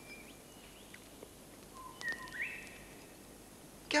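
Wild birds calling: a few short whistled notes and chirps, the loudest cluster about two seconds in, over a faint steady outdoor background.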